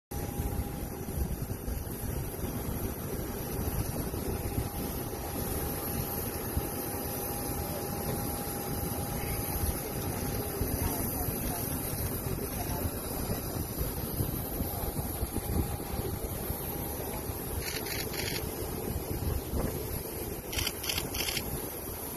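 Wind buffeting a phone microphone on an airport apron, making a constant fluctuating rumble, with indistinct voices of people talking. A faint steady high hum runs through about the first half, and there are a few short clicks near the end.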